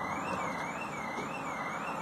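An electronic siren-like alarm tone starting suddenly and warbling up and down about twice a second, over steady background noise.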